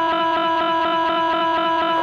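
Electronic music: a held synthesizer chord with a fast, even pulsing rhythm beneath it and no drums.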